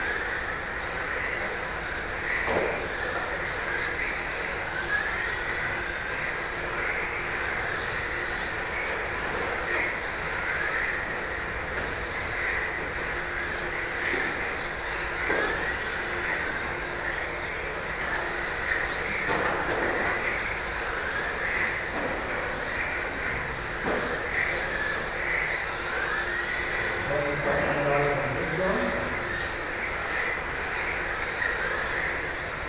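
Several electric RC racing cars of the 17.5-turn brushless class running laps: a continuous high motor whine with repeated rising whines as cars accelerate out of corners, and a few short clicks.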